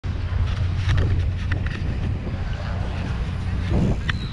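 Wind rumbling steadily on the microphone of a camera carried on a moving mountain bike, with a few light clicks and rattles from the bike rolling over a rough street.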